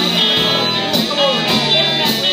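Live band playing amplified: electric guitar with a drum kit keeping the beat, cymbal and snare strikes cutting through.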